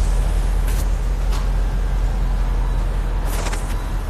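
A steady low rumble of vehicle noise, with a few brief scuffs about a second in and again near the end.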